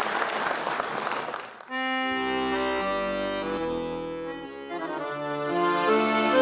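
Audience applause that stops about a second and a half in. Then a piano accordion starts its introduction, playing held chords that change every second or so.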